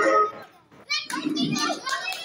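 Recorded song music cuts off suddenly, then after a moment's hush a group of girls bursts into high-pitched excited shouts and laughter as they scramble for the chairs in a game of musical chairs.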